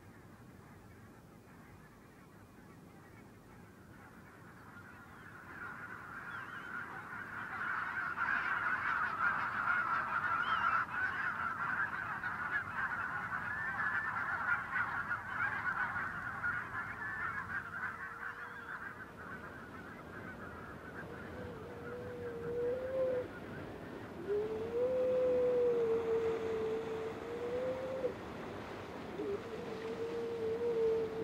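A flock of geese honking, many overlapping calls that build up, are loudest for several seconds and then fade away. In the last third come a few long, wavering drawn-out notes.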